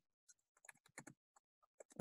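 Faint computer keyboard typing: a handful of scattered keystrokes.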